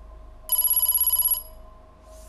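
Quiz-show letter-reveal sound effect: a high electronic ringing tone that pulses rapidly, about a dozen pulses, starting about half a second in and lasting about a second.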